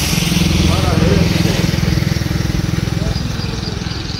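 An engine idling steadily close by, with a faint voice over it.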